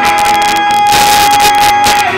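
Live amplified music: an acoustic guitar strummed through a PA while a male singer holds one long, steady high note, which drops and breaks back into the melody at the very end.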